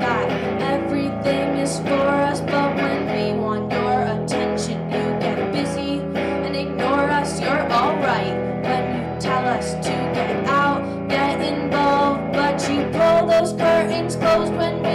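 A live song: a strummed electric guitar with a woman singing over it.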